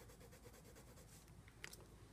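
Near silence, with faint scratching of a white colored pencil stroked across watercolor paint on paper and a small click near the end.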